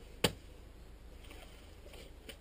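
Peat being cut by hand with a turf spade (slane): one short, sharp knock about a quarter of a second in.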